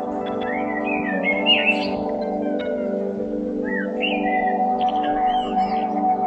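Ambient meditation music: a steady drone of held tones, with bird chirps and short whistled phrases over it, once from about half a second to two seconds in and again from about three and a half to five and a half seconds.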